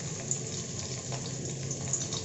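Sliced onions sizzling in hot cooking oil in an aluminium kadhai: a steady hiss with a few small pops.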